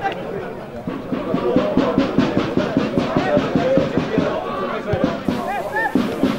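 Drumming in a steady rhythm of several beats a second from football supporters, with spectators' voices and shouts.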